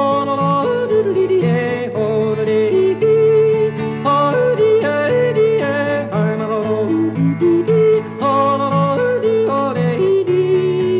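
A male singer yodeling a wordless chorus, his voice flipping sharply between low and high notes, over a country accompaniment with a steady alternating bass.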